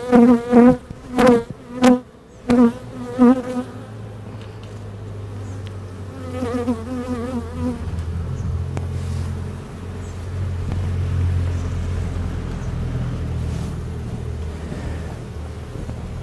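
Agitated honey bees buzzing close around the beekeeper: single bees whine past in short, wavering bursts through the first four seconds and again about six to eight seconds in. Under them a lower steady hum grows louder in the second half. The colony is defensive, disturbed by an inspection in poor weather late in the evening.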